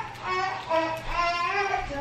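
A young child singing wordlessly, a run of short, high held notes.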